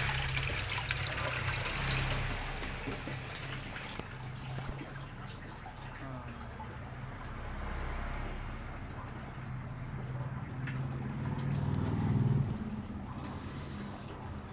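Water pouring and trickling into an aquarium from the filter's return outlets, over a steady low hum.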